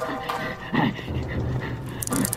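A man's short pained gasps and groans over a sustained chord of film score.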